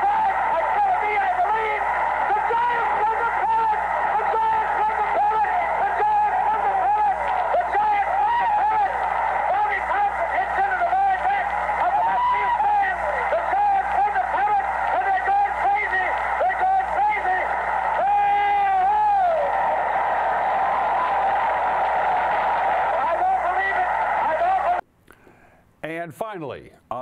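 Old 1951 radio broadcast of a baseball play-by-play: the announcer shouting excitedly and without pause over crowd noise. The recording is thin and tinny, with a steady hum underneath, and it cuts off about a second before the end.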